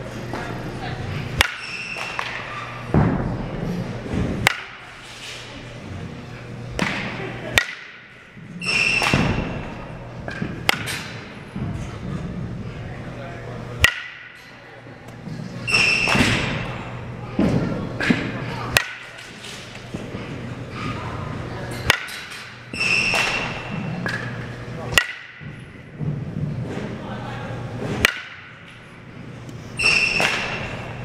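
A softball bat hitting balls over and over, a sharp crack about every three seconds, some with a brief ringing ping, over a steady low hum.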